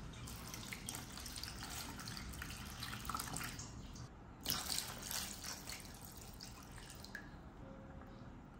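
Water poured from a small plastic cup into a plastic bowl of food, splashing loudest about halfway through and then trickling more softly. Light handling clicks come before it.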